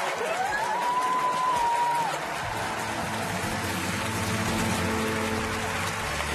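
Studio audience applause and cheering, with a long high held note that rises at its start in the first two seconds. About two and a half seconds in, background music enters with a steady sustained chord and low bass.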